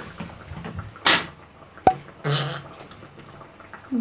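Two short breathy puffs of breath at the table, about a second in and again about two and a half seconds in. Between them comes a single sharp click of chopsticks striking a bowl.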